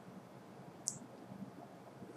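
A single faint computer mouse click a little under a second in, against low room noise.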